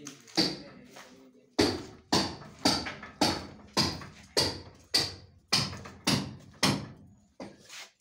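Hammer blows struck at a steady pace, about two a second, each ringing off briefly: one blow, a pause of about a second, then about a dozen more in an even rhythm, stopping shortly before the end.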